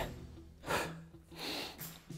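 Two short, sharp breaths from a man straining through a one-arm kettlebell overhead press, one about two-thirds of a second in and one around a second and a half, over quiet background music.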